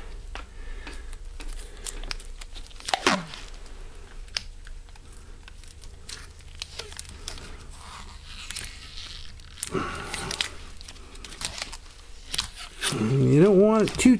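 Black electrical tape being pulled off its roll and wrapped tight around a rifle action and stock, with crinkling, rustling and a loud rip about three seconds in. It is being used to clamp the action down into fresh bedding compound. A man's voice comes in near the end.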